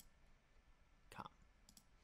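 Near silence: room tone, with a few faint clicks about a second in and again near the end.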